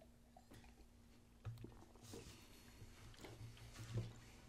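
Very quiet mouth sounds of someone sipping and swallowing beer: a few faint soft clicks and gulps over room tone with a low hum.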